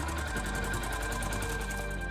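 Harley-Davidson military motorcycle's single-cylinder Rotax four-stroke engine idling, a rapid, even mechanical beat, under background music.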